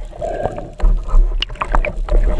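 Muffled underwater rushing and deep rumble of water moving against an underwater camera housing, with a few sharp clicks and knocks in the second half.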